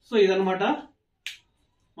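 A man's voice speaks two words, then a single short, sharp click or snap about a second later.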